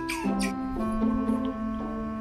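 Background music playing a steady tune, with one shrill squeaky chirp from an otter just after the start.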